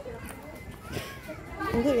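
Children's voices and background chatter, with one high-pitched voice saying "tunggu" (wait) near the end.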